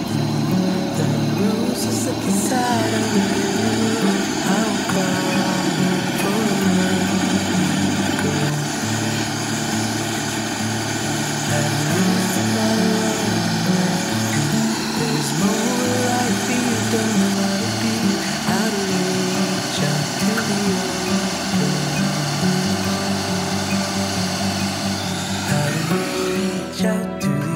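Background music over the steady hiss of a gas torch flame melting scrap 18k yellow gold in a ceramic crucible; the torch noise stops at the very end.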